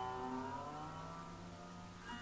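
A sarod note, struck just before, ringing on and fading, its pitch sliding slowly upward about half a second in as the string is glided along the fretless metal fingerboard (a meend), with the sympathetic strings still ringing.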